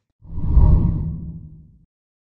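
A deep whoosh transition sound effect that swells up quickly and fades away over about a second and a half.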